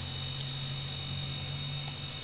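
A steady high-pitched electrical whine with a low hum beneath it, unchanging throughout: background noise in the narration's recording chain, heard plainly in a pause between words.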